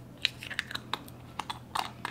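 Irregular light clicks and taps of small nail gems being tipped from a little tray back into a clear plastic jar, with the jar and its lid handled.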